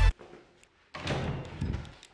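Background music cuts off abruptly. After a brief hush, about a second of muffled thumps and rustling follows: footsteps on stairs and a door being handled.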